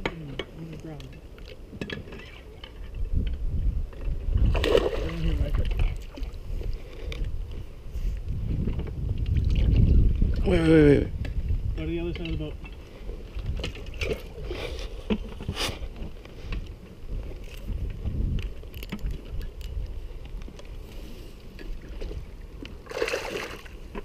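Wind rumbling on the microphone and water sloshing around a small inflatable boat, with a few short shouts and scattered knocks. The rumble swells to its loudest about ten seconds in.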